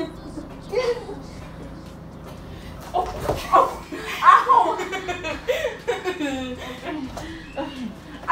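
A young woman laughing, starting about three seconds in and going on in bursts with falling pitch; a short vocal sound comes just before the first second.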